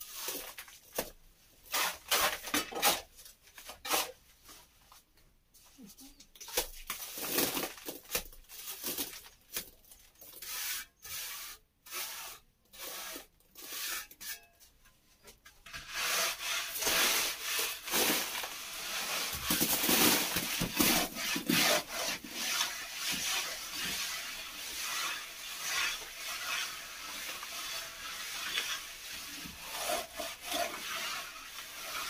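Plastering trowel scraping and rubbing fresh plaster on a wall: separate strokes with pauses at first, then from about halfway a louder, continuous run of back-and-forth rubbing.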